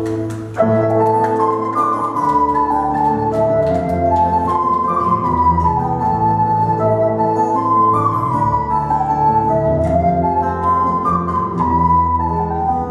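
A live band playing an instrumental passage: a small wooden end-blown flute leads with a repeating melodic phrase over acoustic guitar, bass guitar and drums.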